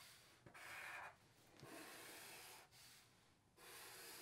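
Faint strokes of a Sharpie marker drawn across paper, three of them, each about a second long.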